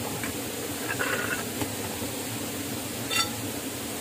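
A steady hiss in the background, with brief metal clicks about a second in and again near three seconds from hands working the shaft and pulley of a homemade generator.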